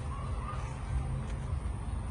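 Steady low rumble on the microphone of a camera carried at walking pace, with a faint bird call in the first half second.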